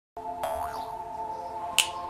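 Light music playing, then a single sharp finger snap near the end.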